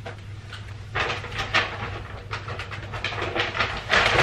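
Paper shopping bags rustling and crinkling in irregular bursts as they are picked up and handled, starting about a second in, over a steady low hum.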